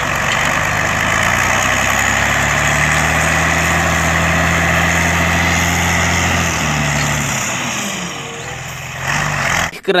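Diesel engine of a large off-road dump truck (Randon RK 430B) running under load as the bed tips, with a dense rushing noise over it. The engine note steps up about three seconds in and drops back about seven seconds in, then fades near the end.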